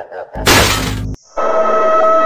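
A loud, noisy crash sound effect lasting under a second, starting about half a second in. About a second in, a steady held music tone starts.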